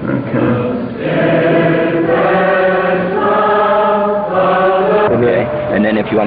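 A group of people singing together slowly in unison, each long note held for about a second before the melody moves on.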